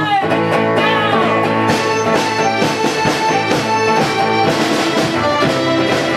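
A psychedelic krautrock band jamming: electric guitar, synthesizers and bass over held synth tones, with a steady drum beat.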